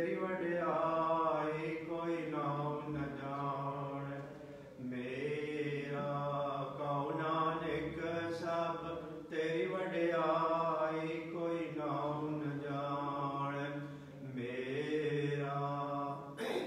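A man's voice chanting a Sikh prayer in a slow, held melody, in phrases of about five seconds with brief pauses between them.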